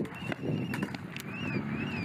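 A siren holds one steady high tone, then about a second in switches to a fast rise-and-fall wail, about two cycles a second. A few sharp cracks sound over a rough background din.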